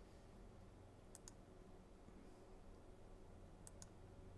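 Near silence with a low room hum, broken by two quick double clicks of a computer mouse, one about a second in and one near the end.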